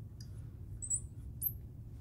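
Marker squeaking faintly on a glass lightboard as an equation is written: a few short, high-pitched squeaks over a low hum.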